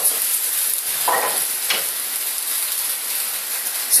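Thin pancake batter sizzling steadily in two hot frying pans, a continuous high hiss.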